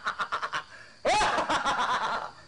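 A person laughing in two bouts of rapid cackling, about ten pulses a second, each bout starting high and falling in pitch; the second bout begins about a second in.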